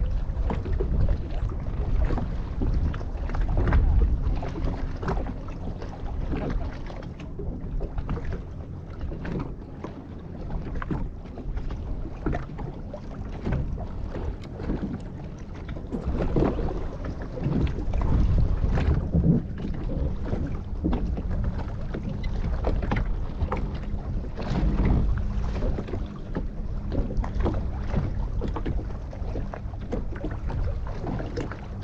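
Choppy sea slapping and splashing irregularly against the hull of a small boat, with wind rumbling on the microphone.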